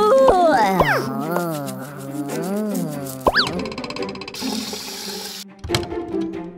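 Cartoon sound effects over light background music: a falling slide, a wobbling boing-like tone, a quick rising whistle about three seconds in, then a short burst of hiss and a few clicks near the end.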